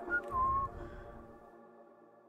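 Melodic house music without drums: sustained synth layers and a couple of short high synth notes near the start, all dying away steadily to a faint tail by the end.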